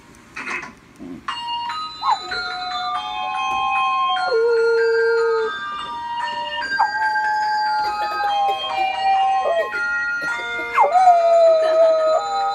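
A dog howling along to music: three long howls, each rising quickly at the start and then held, starting about two seconds in, around seven seconds and near the end, over a melody of held electronic notes.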